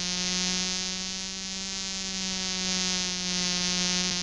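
Model aeroplane engine buzzing steadily as the remote-controlled toy plane flies, swelling slightly in loudness twice.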